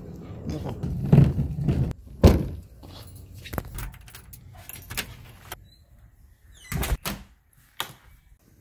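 Keys jangling and a key clicking in a front-door deadbolt as it is unlocked, with a thump about two seconds in and two louder knocks near the end from the lock and door.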